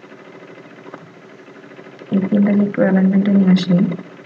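Voice-over speech only: low background hiss for about two seconds, then the narrator speaks for about two seconds in drawn-out, level-pitched syllables.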